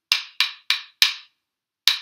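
A pair of wooden rhythm sticks struck together: four even, sharp taps about a third of a second apart, then a pause and another tap near the end that begins the same pattern again. The sticks are playing back the rhythm of a sung phrase.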